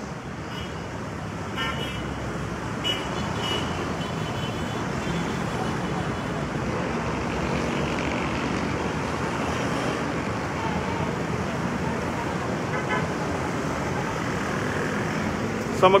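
Steady city road traffic noise, growing slightly louder, with a few brief faint voices in the background.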